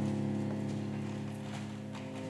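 A held low chord from the opera's instrumental accompaniment, several steady tones slowly fading, with a few faint knocks over it.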